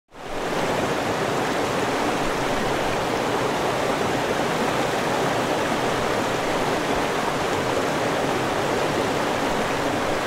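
Rushing mountain stream: a steady wash of water over rocks that fades in quickly at the very start and holds even throughout.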